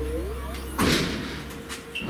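The hinged lid of a Thunder Laser Nova 35 CO2 laser cutter swinging open and knocking to a stop with a single thud just under a second in, followed by a couple of light clicks.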